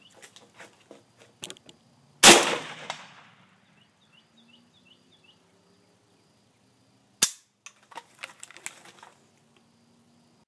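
AK-47 rifle fired twice, about five seconds apart, each a sharp crack; the first is the louder, with a long echoing tail. Light clicks and knocks of handling come before and after the shots.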